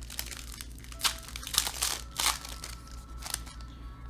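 Foil wrapper of a trading-card pack being torn open and crinkled by hand: an irregular run of crackles, loudest between about one and two and a half seconds in.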